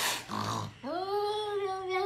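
Domestic cat giving a long, drawn-out meow that starts about a second in, rising at first and then holding its pitch. Just before it, a short noisy burst and a brief low grunt-like sound.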